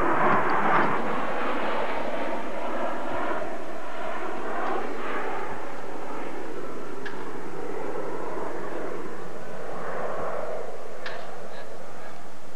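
Jet aircraft flying overhead: a steady, continuous engine sound heard from the ground.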